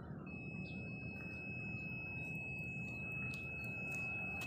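A steady high-pitched tone begins a moment in and holds unbroken, over a low, even background rumble.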